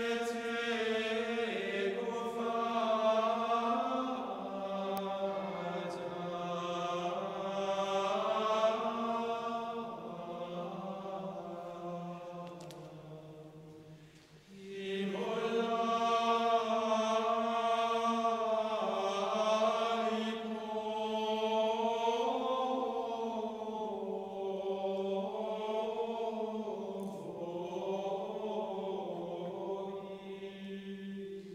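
Men's choir chanting Gregorian chant in Latin in unison, in two long phrases with a brief break near the middle, echoing in a large stone church.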